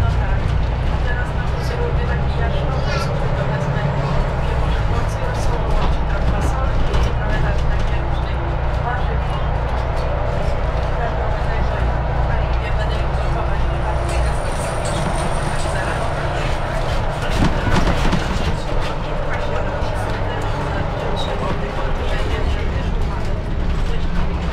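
Inside a moving Mercedes-Benz Citaro city bus: the engine and drivetrain run with a steady deep hum under road and cabin noise, and the deep hum eases about halfway through. Passengers talk indistinctly in the background.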